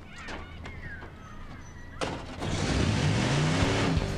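A tow truck's engine revs as the truck pulls away. The sound starts suddenly about halfway through, and the engine note rises, then falls.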